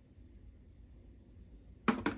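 A ceramic rice bowl is set down on a wooden tray, giving one sharp knock near the end after a quiet stretch.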